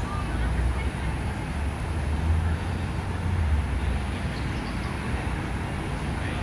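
Steady low rumble of outdoor city ambience, swelling a little in the middle.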